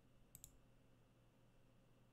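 Near silence: faint room tone, broken by two quick faint clicks about a third of a second in.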